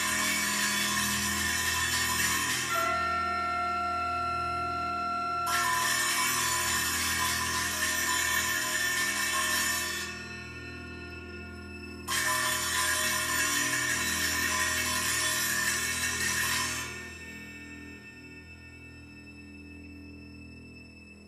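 Large chamber ensemble playing a slow passage: a steady low drone of held string and bass tones, over which three long hissing swells come and go, each cutting off after several seconds, with a single held high note between the first two. The ensemble drops quieter near the end.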